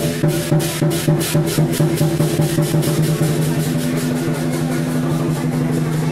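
Traditional Chinese percussion accompanying a dragon dance: drum and cymbal beats about three a second over a steady low held tone, the beats softening after about three seconds.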